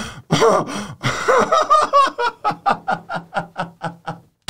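A man laughing hard: a few loud bursts, then a rapid run of short ha-ha-ha pulses that fades out near the end.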